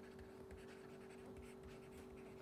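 Near silence: faint scratching of a stylus writing on a pen tablet, over a faint steady hum.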